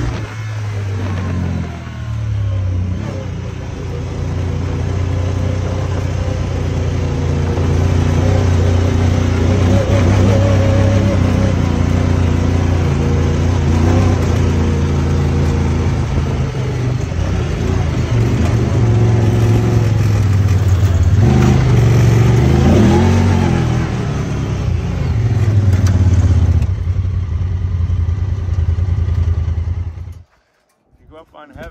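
Honda Talon 1000R side-by-side's parallel-twin engine running under load on a dirt trail, heard from the driver's seat, its pitch rising and falling with the throttle. It revs up briefly about three quarters of the way through and cuts off at the very end.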